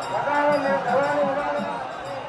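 A voice chanting in long, slightly wavering held notes over the murmur of a large crowd.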